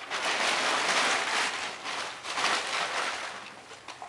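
Packaging being handled, a dense crinkling rustle that is strongest in the first half and fades toward the end.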